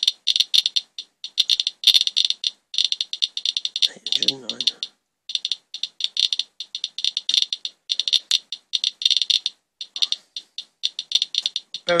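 Radiation Alert Geiger counter with a pancake probe clicking rapidly and irregularly, many chirps a second with brief random gaps. It is counting a rain swipe at about 700 to 800 counts per minute, over twenty times the 34 cpm background.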